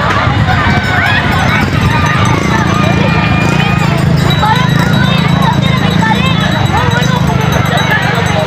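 A crowd of people talking at once, a loud jumble of overlapping voices with no single speaker standing out, over a steady low rumble.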